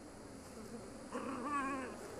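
A Yorkshire terrier gives a short, wavering whine about a second in, lasting under a second, over faint background noise.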